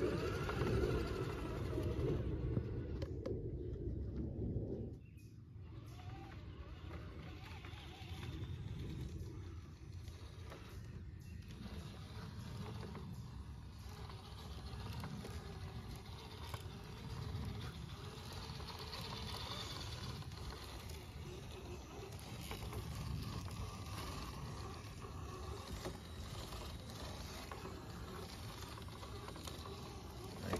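Brushless-converted Axial Basecamp RC crawler truck working slowly over dirt and roots: a low, faint drivetrain and tyre noise, louder for the first five seconds and then steadier and quieter.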